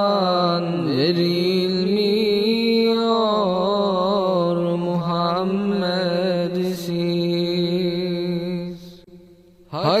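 Unaccompanied ilahi (Turkish Islamic hymn) sung without instruments: long, ornamented held notes over a steady low vocal drone. The voice drops away briefly about nine seconds in, then the next line begins.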